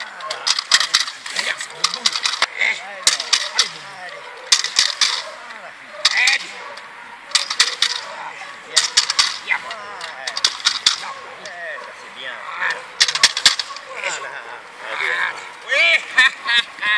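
A protection-training stick shaken and struck in repeated bursts, each a quick run of sharp clattering cracks, coming every one to two seconds, to excite a young German Shepherd during bite work.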